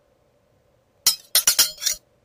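A quick run of about five sharp, bright clinking impacts, starting about halfway through and cutting off abruptly.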